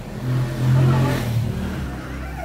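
A motor engine running, swelling louder about half a second in and easing off near the end.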